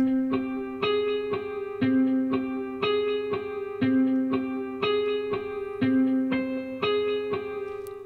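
Omnisphere software synthesizer playing a looping plucked-sounding melody from a MIDI clip: short higher notes over a low note that returns about every two seconds, the notes set to varied velocities.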